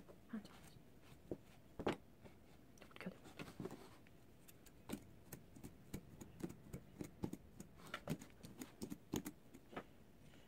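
Fingers and a pink plastic comb working through a doll's long synthetic hair, with faint, irregular clicks and soft rustles.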